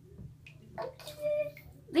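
A toddler's brief high-pitched vocal sound about a second in, over a faint low steady hum in a small tiled room; an adult's voice starts right at the end.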